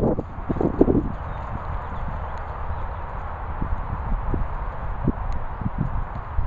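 A Doberman and an English Setter play-chasing on grass: a cluster of louder scuffles in the first second, then scattered soft thuds of paws on turf. A low wind rumble on the microphone runs underneath.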